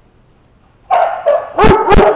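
Dog barking: a quick run of about four sharp, loud barks in the second half, after a quiet first second.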